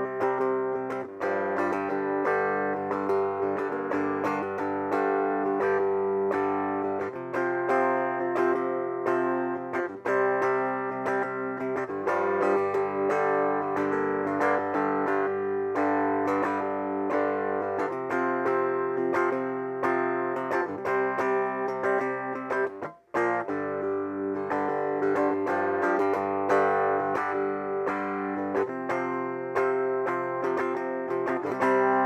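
Three-string cigar box guitar with a single-coil pickup, played clean through a small cigar box amplifier: picked notes and chords that change every few seconds, with a brief stop about three quarters of the way through.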